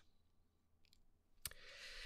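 Near silence, broken about a second and a half in by a single sharp click as the presentation advances to the next slide, followed by a soft intake of breath.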